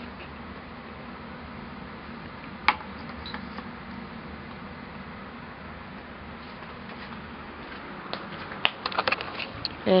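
Steady low mechanical hum of laundry-room machinery, with one sharp click about three seconds in and a run of small clicks and taps near the end.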